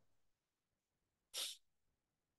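Near silence, broken about one and a half seconds in by a single short, breathy puff of noise from a person, like a quick sniff or exhale.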